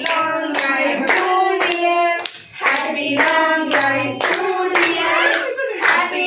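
A group clapping in time, about two claps a second, along with singing of a birthday song; the singing breaks off briefly about two and a half seconds in.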